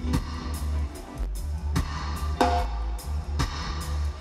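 Live reggae band playing an instrumental stretch with no vocals: a deep, heavy bass guitar line under drum hits and keyboard.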